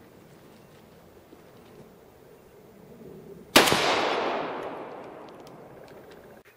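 A single shot from a 16-inch-barrel 5.56 rifle firing a 62-grain green tip round, about three and a half seconds in. The sharp report echoes and dies away over about two seconds.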